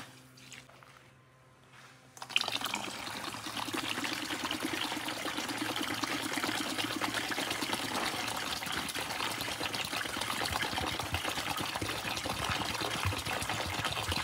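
Clear diffuser base liquid poured from a plastic bottle into an empty plastic bucket: a steady stream of liquid running and splashing, starting about two seconds in.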